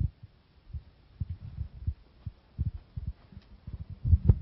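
Handling noise on a handheld microphone as it is carried and passed from one hand to another: irregular low thumps and rumbles.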